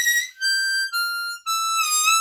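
C diatonic harmonica played high up in first position: a descending run of single held notes, the last one bent and wavering. A short high-register blues lick.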